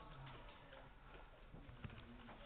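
Near-silent room tone with about five faint, irregularly spaced clicks, the plainest one near the end.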